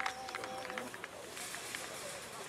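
Spectators' voices calling out just after a goal, with a steady held tone that stops a little under a second in.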